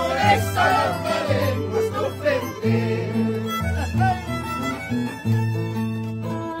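Andean carnival song: a group of men singing together over a violin and a harp. The voices fill roughly the first half, then the violin carries the tune over the harp's low notes.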